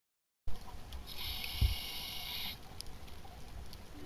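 Outdoor beach ambience that starts abruptly about half a second in: a steady low rumble, with a hiss lasting about a second and a half and a single low thump in the middle.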